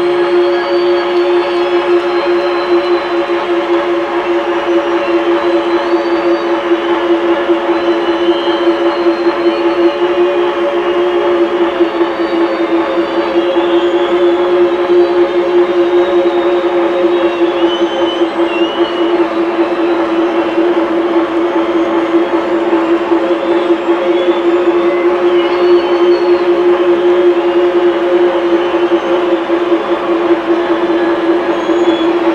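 Sustained electronic synth drone played loud through the stadium PA: two steady low notes held throughout, with faint wavering, gliding tones above and no beat.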